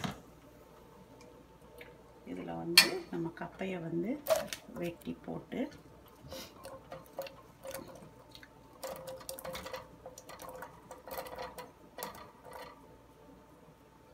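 Diced cassava tipped from a bowl into a saucepan of water, the pieces dropping in with a run of small irregular splashes and plops. The splashes come in the second half, with the bowl scraped out by hand at the end.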